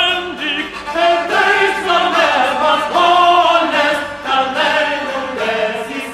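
Male voices singing a medieval Occitan troubadour song, a flowing chanted melody with notes drawn out into melismas, over a steady low drone.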